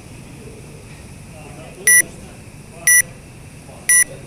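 Workout interval timer giving three short high countdown beeps, one a second, counting down to the start of a timed workout.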